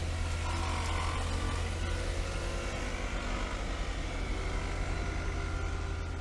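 Electric arc welding on a steel shoring brace, a steady crackling hiss, over the steady low hum of a diesel engine running.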